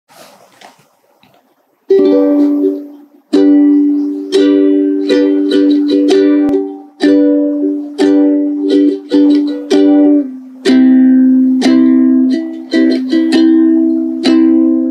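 Aloha ukulele played alone, strumming chords as the instrumental intro of a song. It starts about two seconds in, and each strum is struck sharply and left to ring out.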